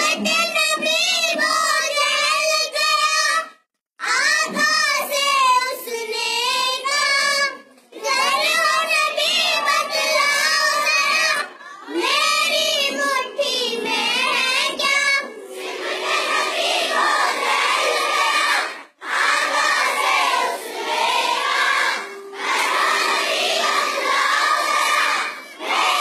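A group of young girls singing an Urdu naat together into a microphone, in phrases of a few seconds broken by short pauses for breath.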